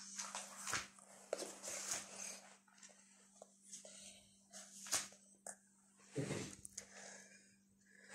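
Quiet, irregular rubbing and scuffing of hands rolling soft cheese dough into sticks on a granite countertop, with a few light taps, over a faint steady hum.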